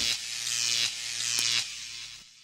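Electric buzzing and crackling sound effect of an animated logo reveal: a steady low buzz with a hissing crackle on top. It drops in level about a second and a half in and then fades away.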